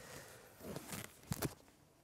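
Faint scuffing of feet and rustling of clothing as a man gets up from a crouch and steps on a concrete floor, with two quick light taps a little past the middle.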